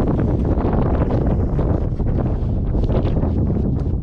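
Wind buffeting the camera's microphone, a loud, steady low rumble, with short scratchy clicks running over it.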